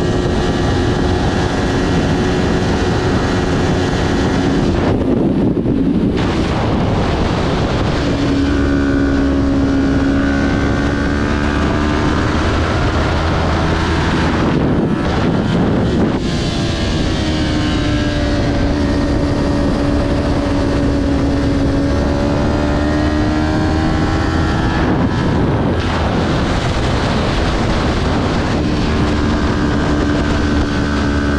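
Kawasaki Ninja 400's parallel-twin engine running hard at racing speed, heard from the bike itself with wind rushing over the microphone. The engine note holds, sags and climbs again through the corners, with brief dips about three times.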